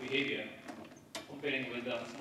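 A man speaking, with one sharp click a little past the middle.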